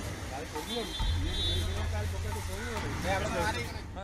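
People's voices talking and calling indistinctly over a steady low rumble.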